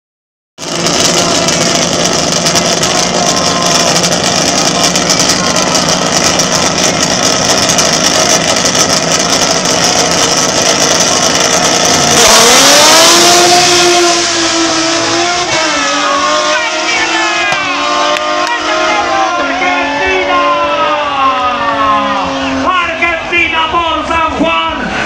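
Drag-racing cars, a Ford Falcon and a Chevrolet Camaro, running loud at the start line, then launching at full throttle about halfway through, the loudest moment. After that the engine notes rise and fall as they pull away down the strip, fading in the highs.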